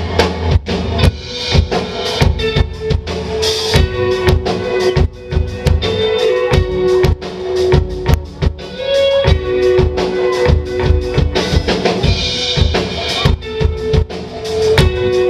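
Live rock band playing an instrumental passage: electric guitars holding sustained notes over electric bass and a busy drum kit with frequent snare and bass-drum hits.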